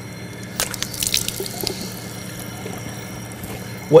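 Water running from a tap into a basin and splashing as hands scoop it to wash the face, with a short run of splashes and drips between about half a second and a second and a half in.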